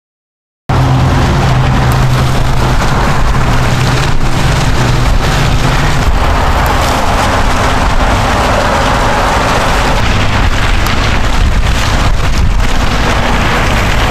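Silence, then under a second in a loud, steady rushing noise starts abruptly and holds without a break, with a low hum under it for the first few seconds.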